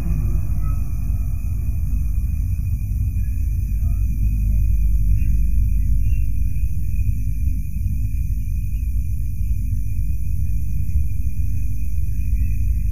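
Steady low rumble and hum of an old live hall recording in a pause in Quran recitation, with faint voices fading out over the first few seconds.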